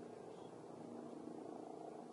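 Faint, steady drone of a distant propeller aircraft engine flying over the burning forest.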